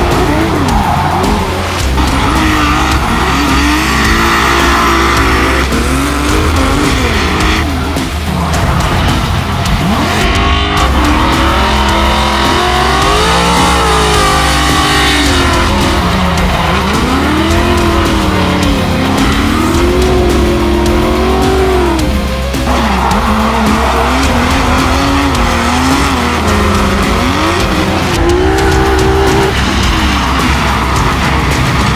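Drift cars' engines revving up and down, with tyres squealing as the cars slide. Several passes are cut together, with a sudden change about a third of the way in and again about three quarters through, over background music with a steady low beat.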